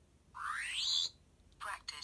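Twelfth Doctor sonic screwdriver universal remote by The Wand Company switching on: a rising electronic whirr about a third of a second in, lasting under a second, then a brief second sound near the end as it enters practice mode.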